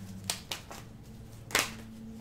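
Tarot cards being handled on the table: a few light clicks and taps of the cards, the loudest about one and a half seconds in.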